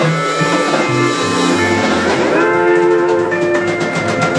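Live country band playing without vocals: upright bass, drum kit and guitar. About two seconds in, a note slides up and then holds.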